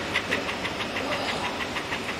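Steady mechanical running noise with a faint, even ticking of about six ticks a second.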